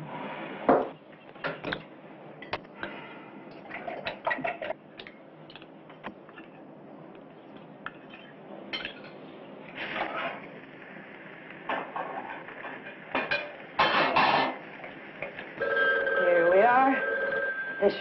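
Dishes and cutlery clinking with scattered light knocks at a breakfast table. A steady tone comes in near the end.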